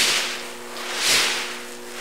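A straw broom swung hard back and forth through the air like a golf club, swishing on each pass, about once a second.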